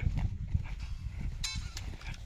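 Footsteps on a hillside dirt path as irregular low thuds, with a brief high-pitched call about one and a half seconds in.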